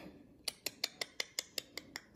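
A faint, rapid, evenly spaced series of light mechanical clicks, about five or six a second, starting about half a second in.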